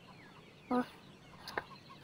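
A chicken clucking once, a short call about two-thirds of a second in, with faint high chirps and a small click around it.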